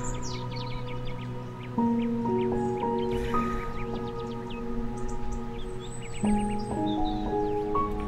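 Slow, calm new-age background music of long held chords, changing about two seconds in and again near six seconds, with bird chirps mixed in.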